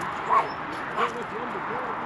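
A dog giving two short yips, about a third of a second and a second in, with faint voices talking in the background.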